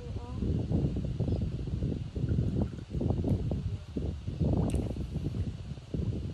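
Uneven, gusty low rumble of wind on the microphone, with rustling, and a brief voice at the very start. A short sharp click comes near the end.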